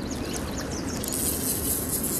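Steady rush of stream water with a low rumble, and a high-pitched hiss that comes in about a second in.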